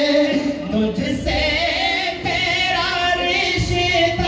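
Unaccompanied devotional singing in the style of a naat, a man's voice amplified through a microphone. It holds long, wavering notes.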